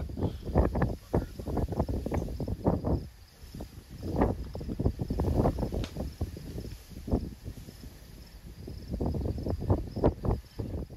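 Strong wind buffeting the microphone in irregular gusts, a low rumbling noise that surges and eases, dropping away briefly about three seconds in and again near eight seconds.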